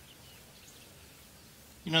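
A pause in a man's speech, filled by faint, even outdoor background noise; near the end he starts speaking again.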